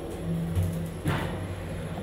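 Low hum inside a moving elevator car, with a short louder sound about a second in.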